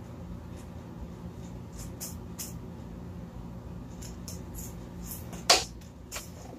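Light scraping and ticking from a hand-held tube being handled, then a sharp knock about five and a half seconds in as the tube is set down in a plastic tub, over a steady low hum.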